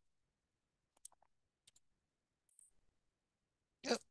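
A few faint computer mouse clicks, about a second apart, as dialog boxes are worked on screen, with a short louder sound near the end.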